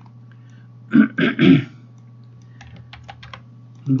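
A man coughs in three quick bursts about a second in. This is followed by a quick run of light clicks at the computer.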